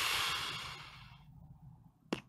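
A man's long sigh, a breath pushed out into the microphone that fades away over a little more than a second.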